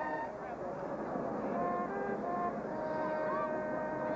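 Marching band's held brass chord cutting off just after the start, followed by stadium crowd noise with scattered whoops and a lone sustained horn tone.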